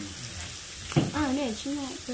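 Meat sizzling on a tabletop dome grill-hotpot, a steady hiss, with a sharp click about a second in and a person talking over the second half.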